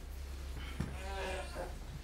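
A faint voice, drawn out and gliding in pitch about halfway through, over a steady low hum.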